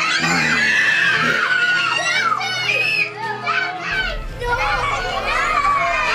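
Many young children shouting and squealing at once, their excited voices overlapping in a crowded burst of noise that eases briefly in the middle.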